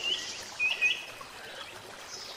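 Small birds chirping: a few short, high chirps in the first second, over faint background hiss.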